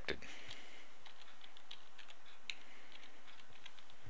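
Computer keyboard being typed on: a quick run of light key clicks as one short word is typed.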